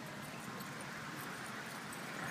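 Quiet outdoor background: a faint, steady hiss with no distinct sound standing out.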